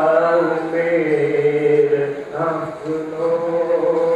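A man reciting a Nepali poem in a slow, melodic chant, holding long notes that glide slowly in pitch, with a brief breath break about two and a half seconds in.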